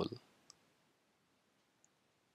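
The tail of a spoken word, then near silence broken by two faint, short clicks: one about half a second in and a fainter one near the end.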